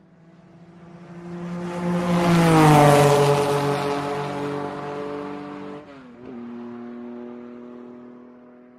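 Channel-logo sting sound effect: a swelling whoosh with a droning pitched tone that drops in pitch at its loudest, about three seconds in, like a fast vehicle passing. It dies back, stutters briefly about six seconds in, then settles into a steady held tone that fades.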